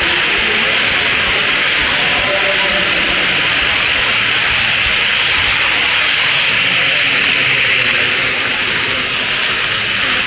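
OO gauge model train running past on the layout's track, a steady rushing noise of wheels and motor that eases off a little near the end as the train moves away, over background chatter.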